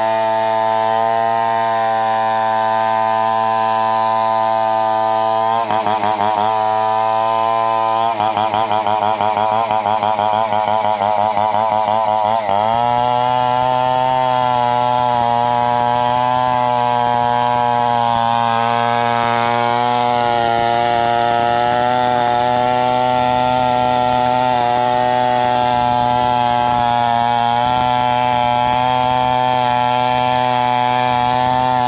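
Two-stroke Stihl chainsaw running at high revs as it rips a coconut trunk lengthwise into lumber. Its note wavers early on, then about twelve seconds in jumps to a louder, slightly higher, steady pitch.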